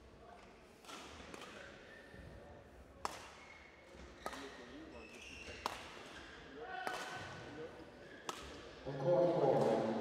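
Badminton rackets striking a shuttlecock back and forth, seven crisp hits roughly one and a half seconds apart, each ringing briefly in the hall. Voices come in near the end.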